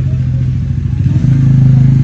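A loud, steady low engine drone, growing louder a little past a second in.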